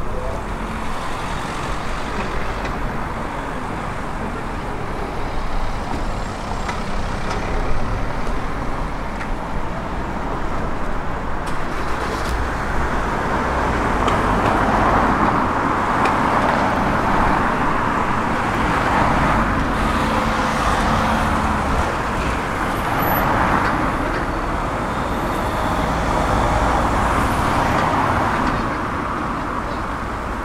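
Road traffic passing along a street, several vehicles going by in turn in the second half as a series of rising and fading swells.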